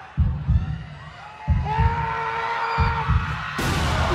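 A dramatic heartbeat sound effect, three low double thumps about a second and a quarter apart, played for suspense under the stunt, with a held tone in the middle. Near the end comes a sudden loud burst of noise as the watermelon on the lying man's head is chopped.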